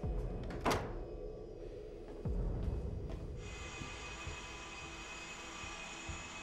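Sustained film-score drone of held tones, with a sharp click just under a second in and a low thud a little after two seconds; a higher held tone joins the music at about three and a half seconds.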